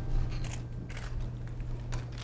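Actors' shoes scuffing on the floor and their clothes rustling as they move, a few short crisp sounds over a steady low hum.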